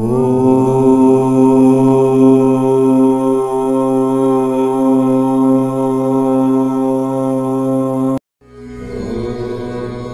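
A single long chanted 'Om', sliding up into pitch at the start and then held steady for about eight seconds before it cuts off abruptly. After a brief silence, softer music fades in.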